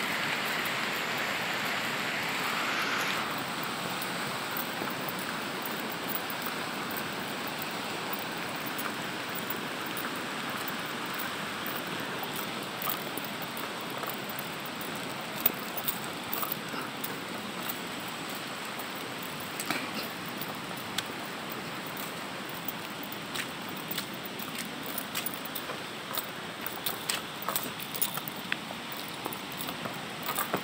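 Steady rush of a flood-swollen river, slowly fading, with light clinks and taps from walking that come more often in the second half.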